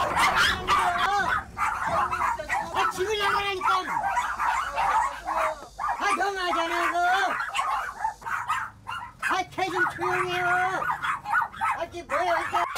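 A large pack of dogs barking, yelping and howling together in a continuous din, with several long howls held for about a second each.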